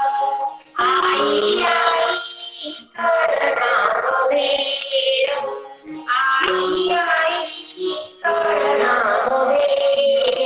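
A woman singing a Marathi children's textbook poem about bhel into a handheld microphone. She sings in phrases of about two seconds with short breaks between them.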